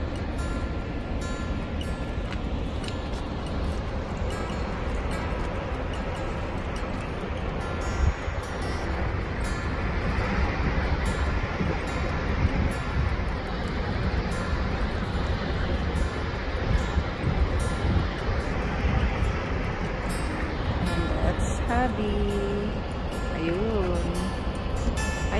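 Steady rushing noise of the Lower Falls of the Yellowstone River mixed with wind on the microphone, growing fuller about midway, with faint background music.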